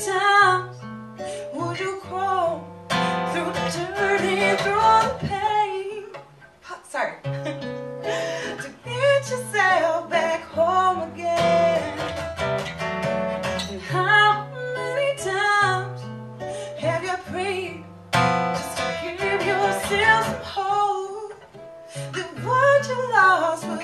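A woman singing a song to her own strummed acoustic guitar, her voice carrying long, sustained notes over a repeating chord pattern.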